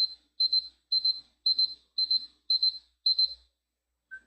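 Electronic timer alarm beeping: seven high-pitched quick double beeps, about two a second, stopping about three and a half seconds in. It signals that the time allowed for the exercise is up.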